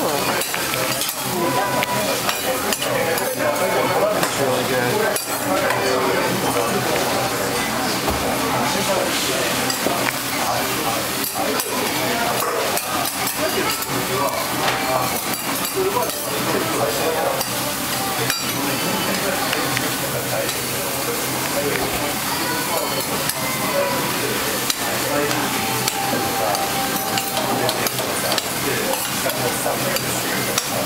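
Hiroshima-style okonomiyaki frying on a flat iron griddle with a steady sizzle. Metal spatulas scrape, tap and clink against the griddle again and again as the cook shapes and flips the pancakes.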